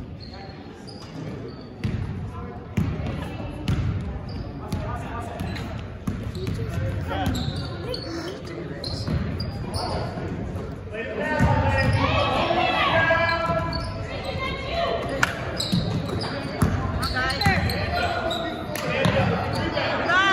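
Basketball bouncing on a hardwood gym floor during play, with repeated thuds about once a second in the first half, and voices from players and spectators echoing in the large gym, louder in the second half.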